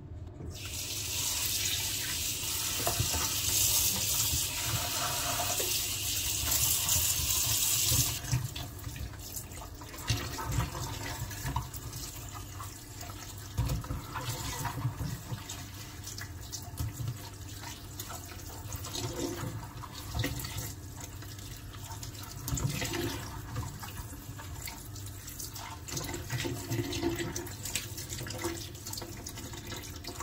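Kitchen tap running water into a colander of strawberries: a loud, full hiss that drops abruptly about eight seconds in to a quieter flow as the stream is turned down. Water splashes and drips as hands rub and turn the berries under the stream.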